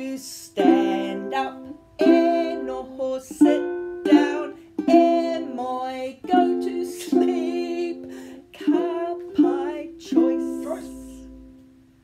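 A woman singing a children's action song while strumming chords on a ukulele, with strums about once a second. It fades near the end.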